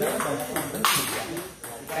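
Table tennis rally: the celluloid ball clicking sharply off paddles and the table several times, the loudest hit about a second in.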